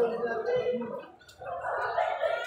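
Muffled, indistinct talking that is hard to make out, with a short pause a little past the middle.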